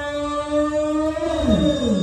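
Chanting voices holding one long, steady note that slides down in pitch at the end of the phrase, with the voices dropping away one after another from about a second and a half in.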